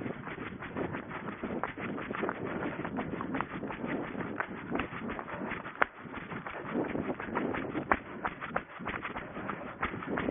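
A runner moving at pace over grass and rough ground: a dense, irregular run of footfalls and rustling and brushing of grass and brush against the runner and a body-worn camera.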